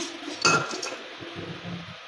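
Metal ladle clinking against the side of a metal cooking pot as the cook starts stirring the daal: one sharp, briefly ringing clink about half a second in, then quieter scraping and stirring.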